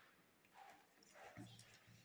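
Near silence, with faint soft handling sounds of a pencil and a plastic set square moving on drawing paper.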